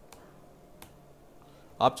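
Two single computer mouse clicks, about three quarters of a second apart, over faint room hum.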